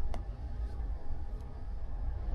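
Quiet indoor background with a steady low rumble, and one faint tap just after the start as a fingertip presses a phone's touchscreen.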